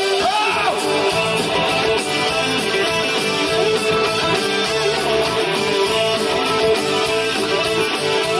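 Live rock band playing, with guitar to the fore and little singing.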